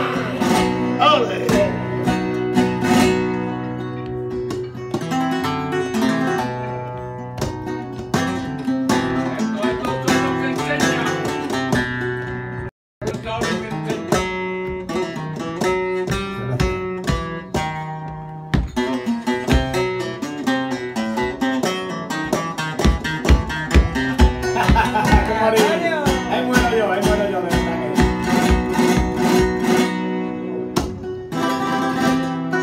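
Flamenco guitar playing bulerías por soleá, a run of plucked and strummed passages with no singing over most of it. The sound cuts out completely for an instant about 13 seconds in.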